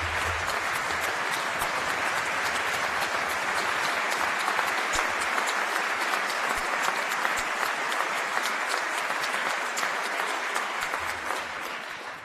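Audience applauding, a long, steady round of clapping that dies away near the end.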